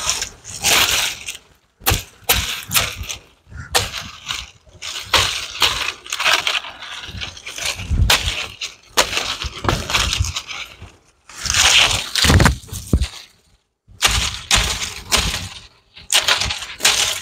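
Dry coconut palm fronds crackling and rustling in irregular bursts, with short pauses between, as they are handled and dragged.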